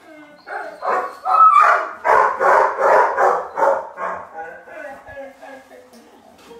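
Puppy barking in a quick run of short yappy barks, about three or four a second, from about half a second in until about four seconds in.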